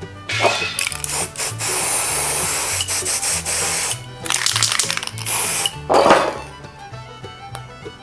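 Aerosol spray-paint can hissing in two long bursts, the first about three and a half seconds, the second shorter, then a brief lower rush about six seconds in, over background music with a steady bass line.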